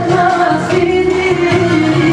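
Loud dance music with a singer holding long notes.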